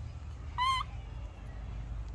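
Infant macaque giving one short, high-pitched coo with a slightly wavering pitch, about half a second in, over a low steady background rumble.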